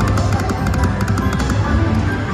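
Triple Coin Treasure video slot machine spinning its reels: a quick run of electronic clicks and chiming tones over steady, loud background music with a low beat.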